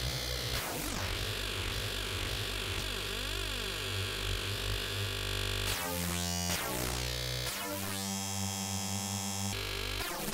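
Serum wavetable synthesizer playing a distorted, heavily modulated future-bass style bass patch. It holds dense sustained notes with sweeping glides and changes note abruptly several times in the second half.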